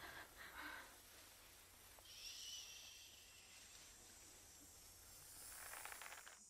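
Near silence, with a few faint, soft noises.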